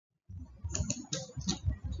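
A quick, irregular run of sharp taps and clicks, about five a second, starting a moment in after a brief silence.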